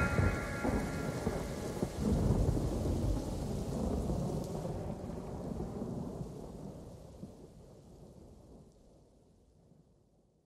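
Thunderstorm sound effect: steady rain with rolling thunder, a louder rumble about two seconds in, the whole fading slowly away.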